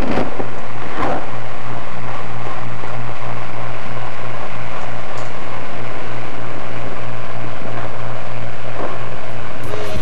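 Handheld fetal Doppler's loudspeaker giving a loud, steady rushing noise over a low hum as its probe is held on the pregnant belly, picking up the fetal heartbeat at about three months of pregnancy.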